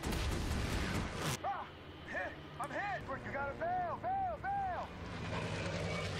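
War-drama soundtrack of a fighter plane being shot down: a loud, noisy burst of explosion and gunfire for about the first second and a half, then a run of short tones that each rise and fall in pitch, over a low rumble.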